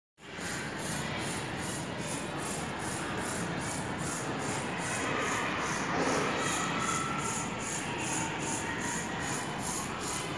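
Steady rubbing or scraping noise with a faint regular pulse about two to three times a second.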